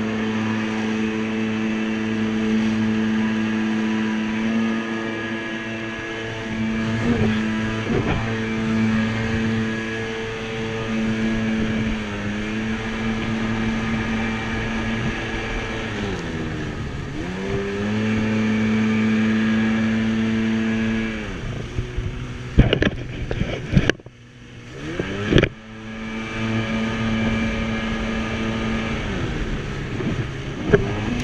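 Jet ski engine running at speed with a steady pitched hum and rushing spray. Its pitch dips as the throttle eases, about 12 s in and again about 16 s in. Near the end the note breaks up for a few seconds in several loud slaps and splashes before the engine steadies again.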